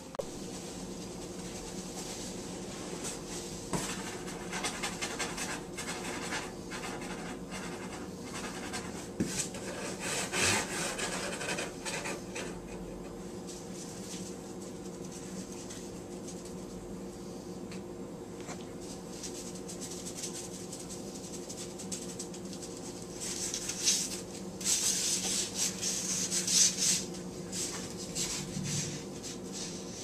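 Foam packing peanuts rustling and rubbing against each other and a cardboard box in scattered strokes, busier near the end, over a steady low hum.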